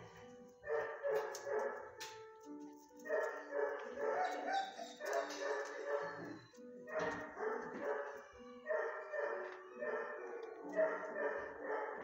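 Dogs barking in a shelter kennel in repeated bouts, each about a second long, coming every second or two. Music plays underneath.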